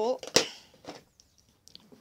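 A single sharp knock about a third of a second in, then faint scratchy rustles as a plastic dibber is worked into loose potting compost in a plastic plant pot to widen a planting hole.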